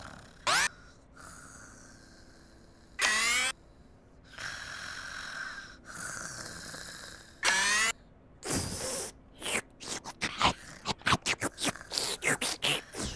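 A cartoon vacuum cleaner's sucking and whooping noises: three short, loud calls that rise in pitch. Between them come soft, slow snoring breaths of a sleeping character, and near the end a quick run of short sucking bursts.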